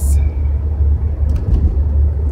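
Steady low rumble of engine and road noise heard inside the cabin of a moving Nissan Maxima.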